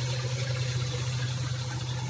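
2007 Ford Everest petrol engine idling under the open hood: a steady, even hum. It runs so smoothly that the fan and drive belt are louder than the engine itself.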